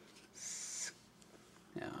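A short hissing "sss", about half a second long, from a person's mouth, like a snake's hiss.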